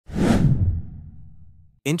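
Transition whoosh sound effect: a sudden rush of noise with a low rumble beneath it, loudest in the first half-second and then fading away over the next second.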